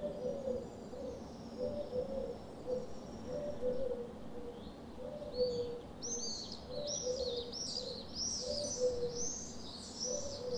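A dove cooing a low phrase over and over, about once every second and a quarter. About halfway through, small birds join in with a quick run of high, arching chirps that grows busier towards the end.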